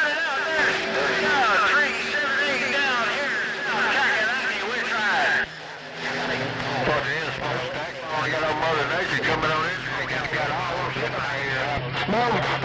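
CB radio receiver on 11 metres picking up distant stations over skip: overlapping voices, garbled and hard to make out. A steady tone sits under the first half; after a brief dropout about halfway through, a low hum runs under the voices.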